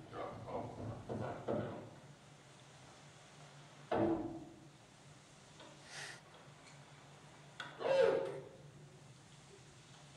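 A field recording of short, voice-like calls played through a lecture hall's loudspeakers over a steady low hum: a few syllables at the start, a sudden loud call about four seconds in, a fainter higher one near six seconds and the loudest call around eight seconds. The presenter takes the calls for Sasquatch imitating human speech.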